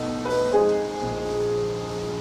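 Live small-group jazz: held piano chords over a bass note, with a new chord coming in about half a second in.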